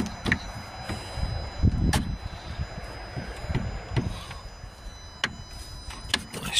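Plastic coolant expansion tank being handled and worked loose from its clip mounting: a few sharp plastic clicks and knocks, with low thuds and rustle from the hand on the tank.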